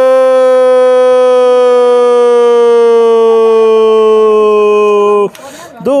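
Football commentator's drawn-out Brazilian goal call, a single "gol" held as one long loud note for over five seconds, slowly falling in pitch and cutting off suddenly near the end.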